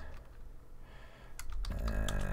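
Computer keyboard being typed on: two quick keystrokes about a second and a half in, after a quiet stretch.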